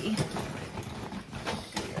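Enamel trading pins on a lanyard clicking and tapping against each other as they are handled, a string of irregular light clicks.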